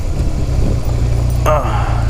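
Honda Rebel 250's air-cooled parallel-twin engine running steadily at low speed, heard as a low hum from a helmet-mounted microphone.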